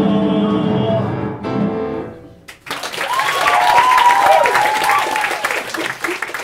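A cast singing the last held chord of a song with piano, which stops about two seconds in. After a brief gap an audience applauds and cheers.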